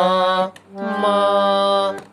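Harmonium playing two held notes in turn, separated by a short break, demonstrating a tivra (sharpened) swara, the note raised a semitone above its natural place.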